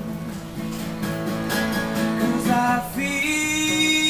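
Acoustic guitar playing chords in an instrumental gap between sung lines of a live pop song, with a held note entering about three seconds in.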